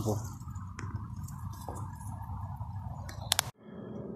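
Low, steady outdoor background noise with a few faint clicks and two sharp clicks about three seconds in, then an abrupt cut to near silence.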